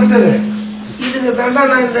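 Harmonium holding one low note, which stops about a second in, under men talking. A faint steady high whine runs throughout.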